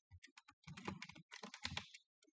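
Typing on a computer keyboard: a few scattered keystrokes, then a quick, dense run of key clicks.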